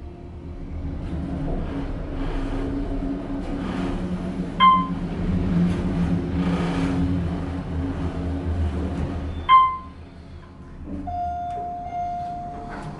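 Otis Series 1 elevator car travelling up, its motor drive humming steadily over a low rumble, decently quiet. Two short chime dings sound during the ride, about four and a half and nine and a half seconds in.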